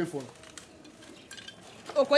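A short lull between lines of dialogue, with a few faint light clicks and scraping.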